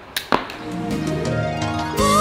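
A shuttlecock kicked with the foot: two sharp taps close together about a third of a second in, the second louder, in a brief gap in the background music. The music then swells back up with sustained tones.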